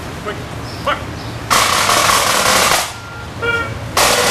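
A pipe band's snare drums playing a roll lasting about a second, starting suddenly halfway through and stopping just as suddenly.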